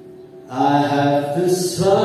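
A man's voice singing in long, held notes, coming in loudly about half a second in after a short quiet pause.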